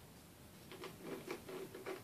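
Faint clicks and rustles of a plastic jug and its snap-in inner containers being handled, a quick string of small ticks from the second half-second on.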